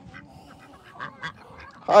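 Ducks quacking in short, scattered calls, faint against the yard, with a woman's voice saying "Hi" just before the end.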